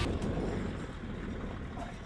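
Low, rumbling wind noise on an outdoor microphone, getting gradually quieter.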